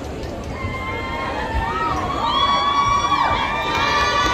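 Audience cheering and shouting, many high voices overlapping and growing louder after the first second.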